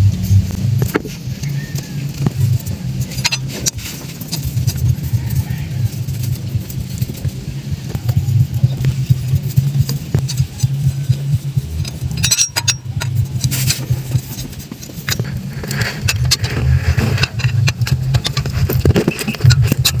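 Ratchet on a long extension tightening the 10 mm bolts of a newly fitted car water pump: scattered metallic clicks and clinks, with a cluster about twelve seconds in, over a continuous low drone.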